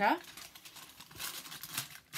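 Paper gift wrapping rustling and crinkling in irregular soft crackles as a sticker seal is undone and the wrapping opened by hand.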